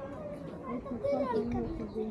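Chatter of passers-by, children's voices among them, with no clear words; the voices grow louder about a second in.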